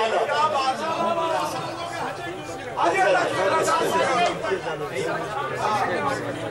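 Speech: men talking over one another in a large hall, the orator's voice coming through the microphone.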